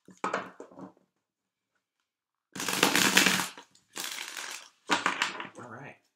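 A deck of tarot cards being shuffled by hand: four bursts of card noise with short pauses between, the longest and loudest about two and a half seconds in.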